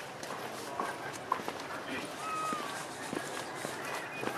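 Indistinct chatter of people nearby, with scattered light clicks and taps.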